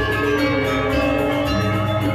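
Balinese gamelan music: bronze metallophones and gongs playing a dense, steady web of ringing tones over a low humming gong note, the accompaniment for the Rejang temple dance.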